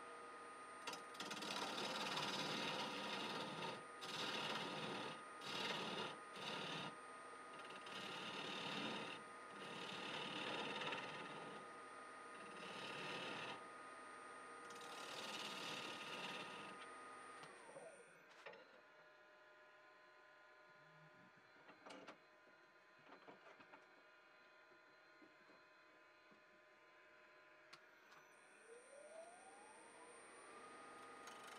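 A bowl gouge cuts into the inside of a small branch-wood bowl spinning on a variable-speed Grizzly G0766 wood lathe, in repeated loud scraping passes over the lathe's steady high whine. About 18 s in the whine falls away as the lathe spins down. After a quieter stretch with a few clicks, it rises again near the end as the lathe spins back up.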